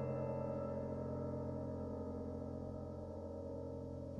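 A sustained chord on a Bechstein grand piano, held and slowly dying away, with no new notes struck.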